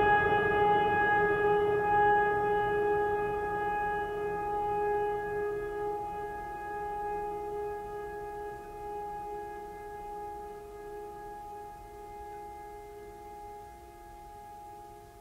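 Ambient background music: one struck, bell-like chord that rings on and slowly fades away.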